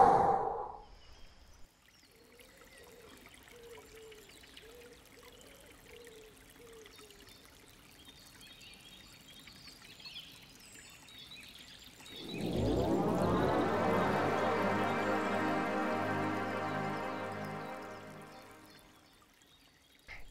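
A breath right at the start, then a faint wavering tone. About twelve seconds in, a sound effect swells up: a sustained tone rich in overtones that rises in pitch over about two seconds, holds, and fades out near the end.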